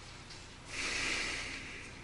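A woman's long audible breath, starting a little way in and fading over about a second.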